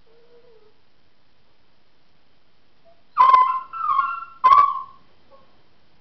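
A dog whines faintly, then about three seconds in gives three loud, pitched yelping howls in quick succession. This is distress vocalising from a dog with separation anxiety.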